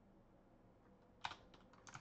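Near silence broken by computer keyboard keystrokes: one sharp click a little past a second in and a few lighter clicks near the end.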